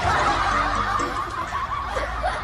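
People laughing, starting suddenly and running on as breathy, unbroken laughter.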